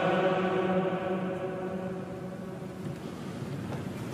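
The held last note of a sung Amen, one steady pitch, fading away over the first two seconds in a large, echoing church, leaving faint room sound.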